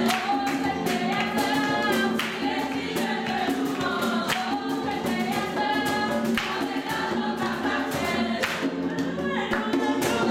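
A group singing a gospel worship song together, over a steady beat of sharp percussive strokes.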